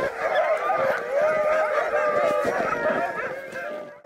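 A pack of Greenland sled dogs howling and yelping together, many wavering high voices overlapping in a continuous chorus that thins near the end.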